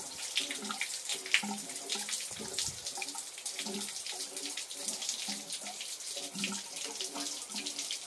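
Water running steadily from cut bamboo spouts into a stone shrine hand-washing basin (chōzubachi), a continuous splashing trickle.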